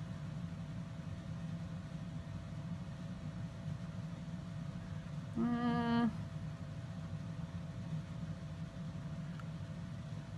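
Steady low background hum with a faint constant tone. A brief closed-mouth hum in a woman's voice comes about five and a half seconds in, held at one pitch for under a second.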